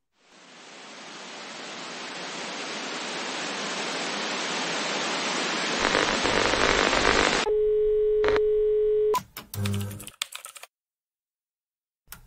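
Television-static hiss swells in over about seven seconds, with a low rumble joining near the end. It cuts abruptly to a steady electronic beep tone held for under two seconds, followed by a few short clicks.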